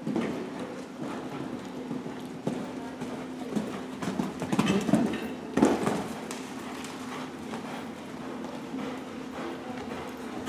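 A horse's hoofbeats as it canters on the arena's sand footing, loudest about four to six seconds in as it passes close by. A steady low hum runs underneath.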